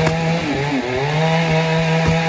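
A small engine running steadily at an even pitch.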